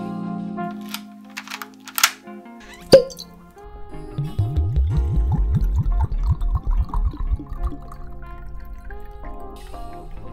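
Intro jingle music: sustained chords, a few sharp clicks and one loud hit about three seconds in, then a run of rapid low pulses for a few seconds.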